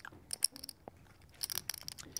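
Light clicking of poker chips being shuffled in a player's hand, in two short flurries, about a third of a second in and again around a second and a half in.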